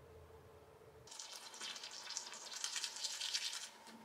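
Manual toothbrush scrubbing teeth with quick back-and-forth strokes. It starts about a second in and stops just before the end.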